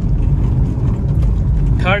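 Honda City's four-cylinder diesel engine pulling under acceleration in second gear, heard inside the cabin as a steady low rumble mixed with tyre and road noise from a rough surface.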